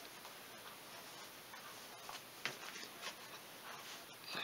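Faint rubbing of a cloth towel over a wet vinyl decal on a plastic ATV panel as it is pressed flat, with light ticks and a few soft brushing strokes about two and a half to three seconds in.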